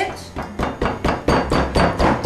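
Pestle pounding rapidly in a marble mortar, about six even strikes a second of stone on stone, mashing palm sugar into pineapple juice and lemon juice.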